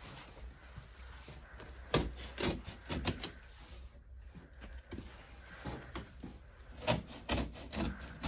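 Scissors cutting down the corners of a double-walled corrugated cardboard box, with rough scraping of blades through the card and a few sharp clicks.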